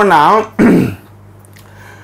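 A man's voice speaking for the first half second, then a short throat-clearing about half a second in. After it comes a pause with only a faint steady hum.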